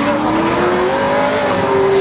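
Drift car engine held at high revs, its pitch climbing steadily, with tyres squealing as the car slides sideways through a corner.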